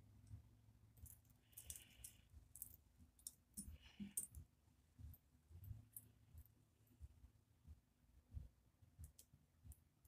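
Near silence with faint scattered clicks and short rustles from beaded flexi hair clips being handled close to the microphone.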